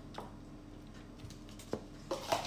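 Quiet kitchen room tone with a low steady hum, broken by two light clicks, one just after the start and a sharper one near the end, as cheese is scraped from a plastic tub into a glass bowl.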